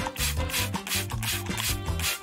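A small hairbrush rubbing through a doll's long synthetic hair in repeated strokes, over background music.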